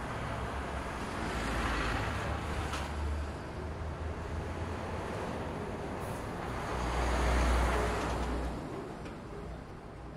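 Street traffic: two vehicles pass, swelling and fading about two seconds in and again about seven seconds in, over a steady rumble of road noise.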